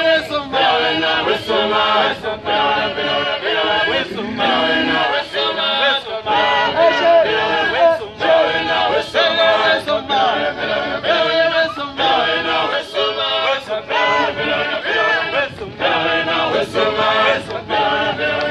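A group of voices singing a chant-like choral song, with men's voices among them.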